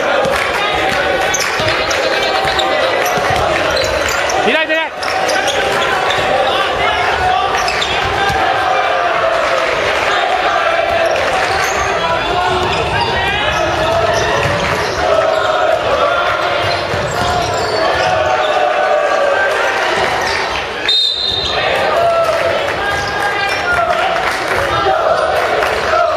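Basketball game in a large gymnasium: a ball bouncing on the hardwood court under continuous shouting and calling from players and benches. A referee's whistle sounds briefly near the end.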